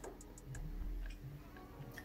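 A few faint ticks, about a quarter second apart within the first half second, over low room tone.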